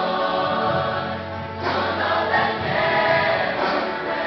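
Mixed youth choir of male and female voices singing a gospel song in held chords, with a new, louder phrase beginning a little over a second and a half in.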